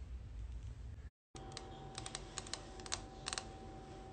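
Long acrylic stiletto fingernails tapping, a run of sharp clicks in small clusters over a faint steady hum.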